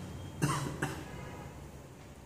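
A man coughing briefly twice in a pause between sentences of his reading.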